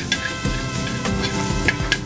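Shrimp and garlic sizzling in a hot sauté pan as they are stirred with metal tongs, heard under steady background music.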